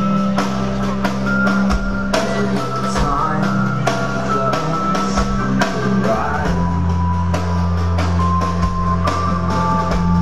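A rock band playing live: drum kit, sustained bass notes and electric guitar at the start of a song. The low notes change about six and a half seconds in.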